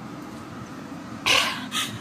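A woman crying: a sharp, breathy sobbing gasp about a second and a quarter in, then a shorter one near the end.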